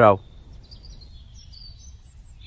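Birds chirping in the background, a string of short high notes, over low steady outdoor background noise.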